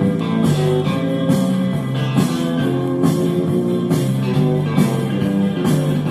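Recorded music with guitar, played loud through the speakers of a Sanyo GXT-4730KL stereo music centre.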